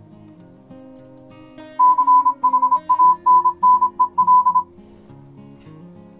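A Morse code tone, one steady high pitch keyed on and off in fast dits and dahs for about three seconds from a couple of seconds in, sent at about 35 words per minute. The signal is being decoded into text. Acoustic guitar background music plays throughout.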